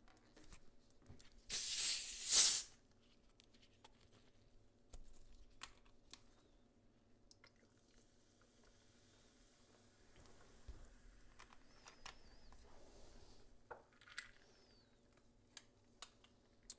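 A two-litre plastic 7UP bottle is twisted open, its carbonation escaping in two short, loud hisses about two seconds in. Later the soda is poured over ice into a glass with a faint fizz.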